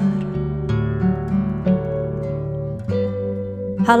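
Acoustic guitar picking a slow run of single notes over sustained low notes, an instrumental gap between sung lines of a slow ballad. A woman's singing voice comes back in right at the end.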